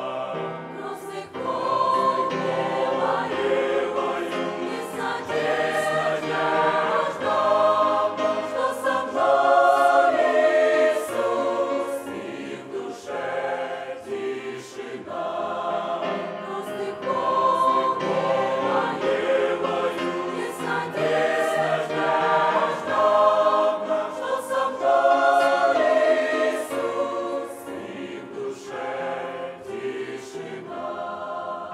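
Mixed church choir of men's and women's voices singing a hymn together in phrases that swell and fall.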